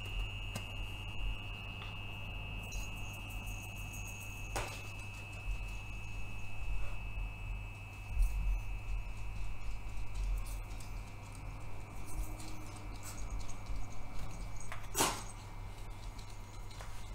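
Steady high-pitched electrical whine and low hum from an electric cooktop heating a pot of water. Over it come faint rattles of salt being shaken into the pot and two sharp clicks, one about four and a half seconds in and one near the end.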